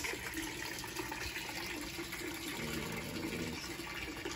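Decorative red hand-pump barrel fountain running, water splashing steadily into the barrel.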